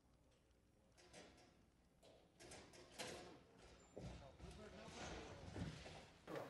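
Sharp clicks, then a heavy thud about four seconds in as a person collapses onto the stage, followed by muffled voices and shuffling.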